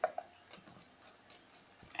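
Flour poured from a ceramic cup into a bowl of batter: faint, scattered clicks and taps, with a sharper click right at the start. A faint steady high tone sits behind them.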